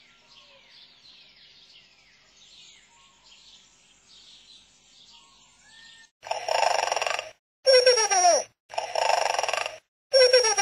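Faint bird chirps, about two a second, each a quick falling note, for the first six seconds. Then, from about six seconds in, three loud bursts of sound that start and stop abruptly, two of them with falling pitch sweeps.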